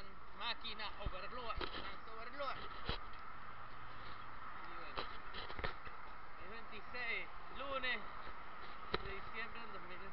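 Indistinct talking by a voice over steady street traffic noise, with several sharp knocks from the handheld recorder being handled.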